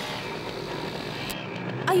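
A motor vehicle engine runs amid road traffic as a steady drone that cuts off abruptly about a second and a half in.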